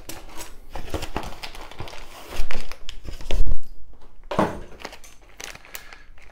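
Clear plastic kit parts bags crinkling and rustling as they are handled and pulled out of the box, with two louder rustles around the middle.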